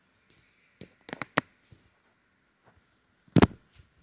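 Handling noise of a clip-on microphone being fiddled with in the fingers: a few sharp clicks and rubs about a second in, and one louder short scrape about three and a half seconds in.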